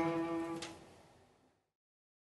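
A cello note held with vibrato, its pitch wavering slightly, that stops a little over half a second in and dies away.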